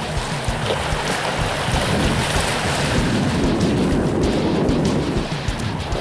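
Small waves washing up over the sand at the water's edge, with wind buffeting the microphone.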